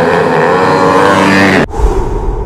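A drag-racing motorcycle engine revving hard, its pitch wavering and climbing. It cuts off abruptly near the end and gives way to a low rumbling whoosh.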